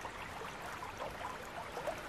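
A creek running with a faint, steady trickle.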